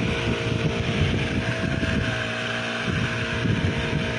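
Brush cutter's small engine running steadily under load, driving a weeder head that churns a furrow through grassy soil.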